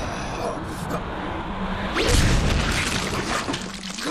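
Anime fight sound effects: a sudden heavy hit about halfway through, deep and loud, carrying on briefly as a rumble, over a dense background of score and voices.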